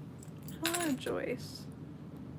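Small metal pieces clinking and jingling in the hands, with a short hum from a person's voice about half a second to a second in.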